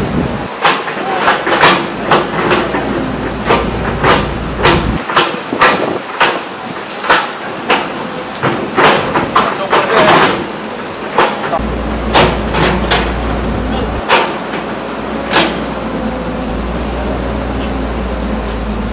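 Irregular sharp knocks or taps, one to two a second, with a low rumble that comes and goes.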